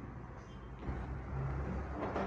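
Quiet room tone with a low steady hum and faint background rumble.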